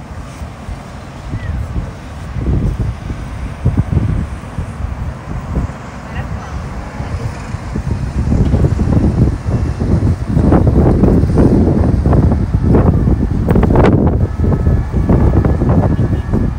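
Wind gusting across the microphone of a handheld phone, a heavy low rumble that grows much stronger about halfway through. Faint city traffic and people's voices sit underneath.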